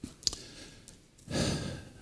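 A man's audible breath into a close microphone, a breathy hiss about half a second long starting around a second and a half in, preceded by a small click early in the pause.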